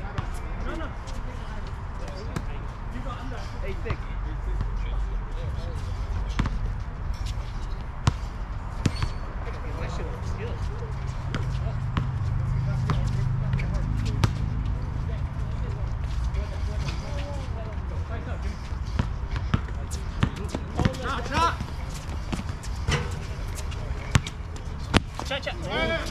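Basketball bouncing on an outdoor hard court as a pickup game is played, scattered sharp thuds over a steady low rumble, with players' voices calling out now and then, more of them in the last few seconds.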